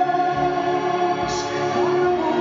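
Music: a slow song with a held singing voice over sustained, choir-like chords, and a brief high hiss a little past halfway.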